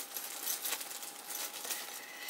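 Faint rustling and crinkling of a small plastic bag being handled and opened, with scattered small clicks.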